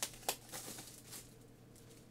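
Clear plastic film being peeled off a cardboard laptop box: a few short crackles, the sharpest about a quarter second in, then fainter ones.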